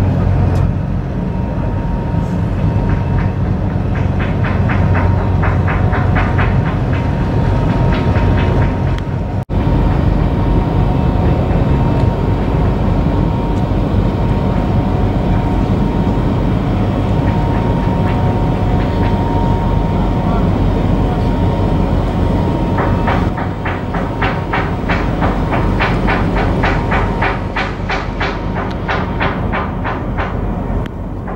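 Steady heavy rumble of marine diesel engines from a harbour tug working close alongside a large warship, with a faint steady whine. A rapid, even clatter comes in twice, about four seconds in and again near the end.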